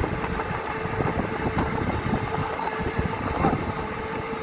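Vehicle running along a road, with wind buffeting the phone's microphone and a steady hum.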